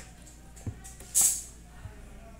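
A smartphone being set down and shifted on a plastic wireless charging pad: a light click about two thirds of a second in, then a short scraping swish just after a second, and a faint tap near the end.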